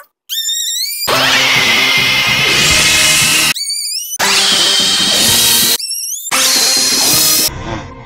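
A man screaming loudly at a high pitch in three long stretches, broken by short rising cries.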